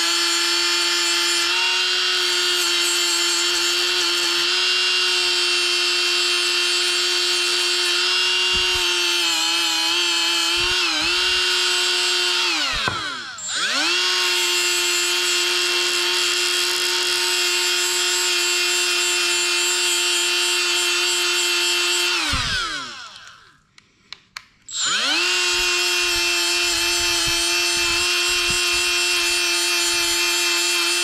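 Cordless rotary tool with a small abrasive wheel running at a steady high whine while a rusted, corroded bolt is cleaned against it. The tool slows and picks up again about halfway through. Near the end it winds down to a stop and, after a couple of seconds, spins back up to speed.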